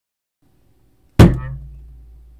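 A single loud thump about a second in, dying away over half a second, against faint room noise and a low hum.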